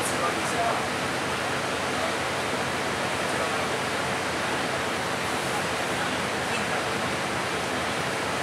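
Mercedes-Benz Citaro city bus standing at idle, heard from inside the cabin as a steady, even rushing noise.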